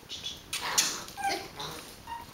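A coated xoloitzcuintli giving a few short whimpers, separate brief cries with the loudest about three quarters of a second in.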